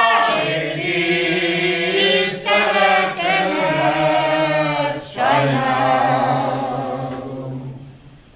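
Group of elderly men and women singing a Hungarian village folk song unaccompanied. The phrases are broken by short breath pauses about two and a half and five seconds in, and the last phrase is held and fades away near the end.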